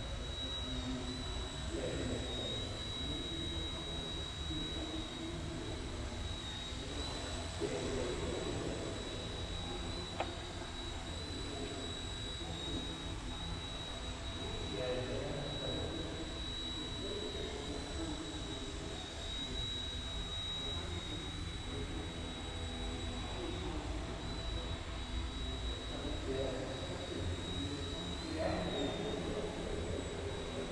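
Eachine E129 micro RC helicopter hovering: a steady high-pitched motor whine that wavers slightly in pitch with the throttle, over a low rotor hum.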